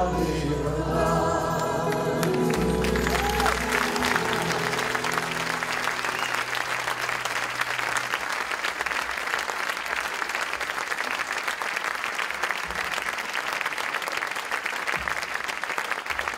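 A man's and a woman's voices hold the last sung note over Portuguese guitar and accompaniment, ending about three seconds in. Then an audience applauds steadily.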